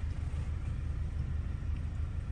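A steady low rumble, with a faint hiss above it, inside a car's cabin.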